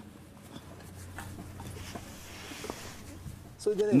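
Faint rustling and a few soft knocks as a foot in a tabi sock is fitted into a wooden geta, over a low room hum. A man's voice breaks in just before the end.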